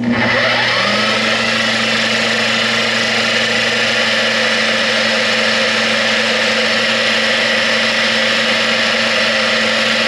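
Bench-mounted 7-inch electric sander/polisher switched on, its motor whining up to speed in about a second and then running steadily while a guitar headstock is buffed on its pad with polishing cream.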